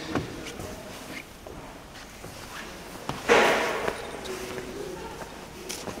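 Footsteps and camera handling noise in a large, echoing stone church, with one short breathy burst a little past halfway through.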